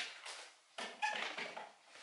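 Handling noise from parts of a softbox lighting kit being fiddled with: a sharp click, then two short stretches of rustling and scraping.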